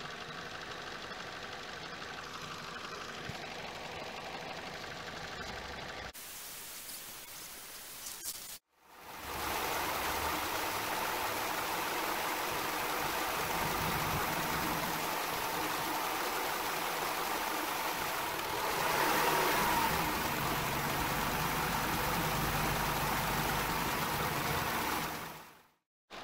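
Vauxhall Corsa petrol engine idling, heard close up in the engine bay as a steady noisy run. The sound changes abruptly about six seconds in, drops out briefly near nine seconds, then comes back louder with a swell a little before 20 seconds and fades out near the end.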